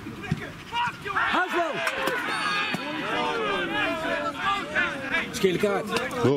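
Several men's voices shouting and cheering over one another outdoors, starting about a second in: footballers celebrating a goal.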